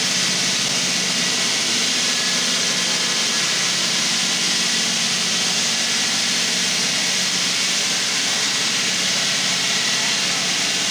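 Granite-cutting circular saw running steadily: a loud, even hiss over a low machine hum.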